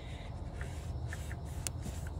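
Microfiber cloth rubbing faintly inside a Kia Sedona's throttle body as it is wiped clean of dirt and cleaner, with a few light clicks.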